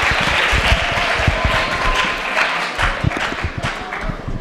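Audience applauding in a lecture hall, a dense patter of many hands clapping that thins and dies down toward the end.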